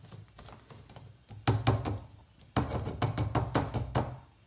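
Plastic clicks and knocks of a Nutribullet cup and blade base being handled and unscrewed on a counter. A couple of sharp knocks come about a second and a half in, then a quick run of clicks through the second half.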